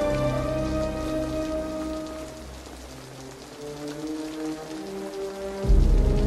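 Steady rain under a film score of long held notes. The music thins out in the middle and swells back with a loud low note near the end.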